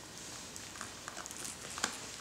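Quiet room with a few faint soft ticks and one sharper click near the end, small handling sounds as the baby moves in the seat with its plastic tray.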